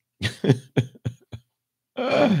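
A man laughing: about four short bursts over a second, each fainter than the last.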